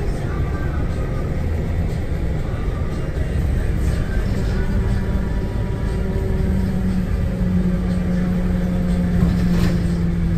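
Steady low rumble of a moving road vehicle, with a low hum that steps up in pitch about halfway through.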